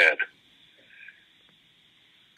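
A man's voice over a video call finishing a word, then a pause of near silence with faint line hiss, broken by a brief faint sound about a second in.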